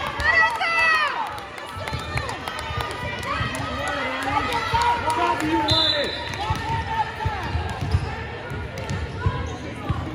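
Girls' voices calling out and cheering across a gymnasium, loudest in the first second or so. Scattered thuds of a volleyball bouncing on the hardwood floor run underneath.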